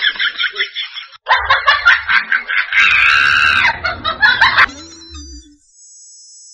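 A woman crying loudly in an exaggerated, comic way: quick sobbing pulses, a brief catch of breath, then a louder run of sobs rising into a long drawn-out wail that stops a little before the end.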